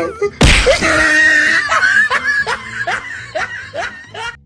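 A sudden loud hit about half a second in, followed by a person laughing in short, quickly repeated bursts.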